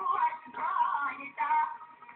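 Singing with musical accompaniment in an old recording with no treble, the voices in short phrases that change pitch.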